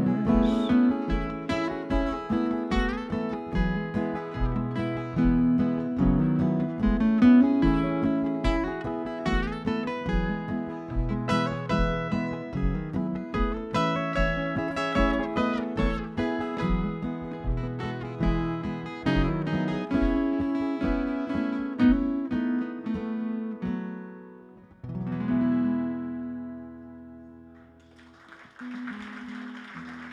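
Two acoustic guitars play an instrumental passage of picked notes over a steady low kick beat. The piece ends with a last chord at about 25 seconds that rings out and fades, and applause starts near the end.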